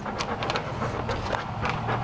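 A dog panting, with small irregular clicks and rustles.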